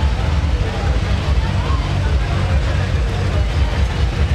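John Deere tractor's diesel engine running slowly as it tows a parade float, a steady low rumble, with crowd chatter over it.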